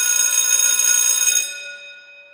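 Electric bell ringing with a rapid clapper rattle, stopping about one and a half seconds in and then ringing out as it fades.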